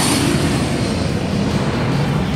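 Small twin-engine jet making a loud, steady rushing engine noise as it passes low over the runway and climbs away.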